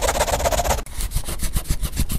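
Scratchy, rasping noise effect like a pen or chalk scratching on a surface, turning about halfway into a rapid run of crackling ticks.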